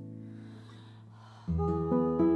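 Classical guitar: a chord rings on and fades away, then new notes, including a low bass note, are plucked about one and a half seconds in.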